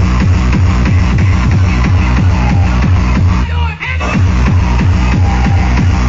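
Hardcore gabber DJ set played loud over a festival sound system: a fast, steady kick drum under dense synths, with a brief break in the beat about three and a half seconds in.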